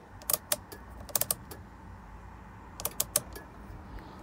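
Light, sharp clicks and taps of hard plastic inside a car cabin, about ten of them, in small clusters about a second in and near three seconds, over a faint low hum.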